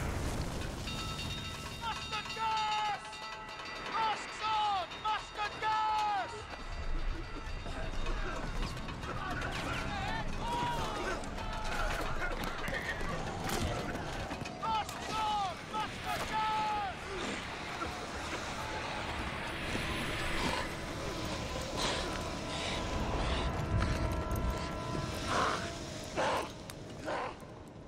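World War I battle sound from a film mix: men shouting in short, falling cries, with scattered shots and explosions and a music score underneath. The shouting comes in two spells, a few seconds in and again past the middle.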